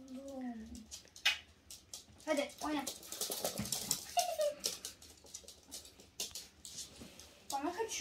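Chihuahuas at play: a few short whimpers falling in pitch, over many light, scattered clicks of claws on a laminate floor.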